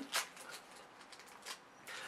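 Toy blind bags being ripped open and handled: faint rustling of the packaging with a few small crackles, the clearest near the start and about a second and a half in.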